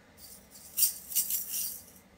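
Carrot-shaped plastic shaker filled with rice and aquarium rock, shaken several times in quick strokes: a jingly rattle.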